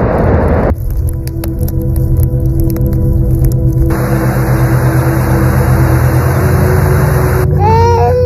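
A music bed of steady sustained tones over a low pulsing beat, laid under sound effects. A loud crash of collapsing glacier ice into water cuts off about a second in. A steady hiss of heavy rain and wind starts about four seconds in, and an infant starts crying near the end.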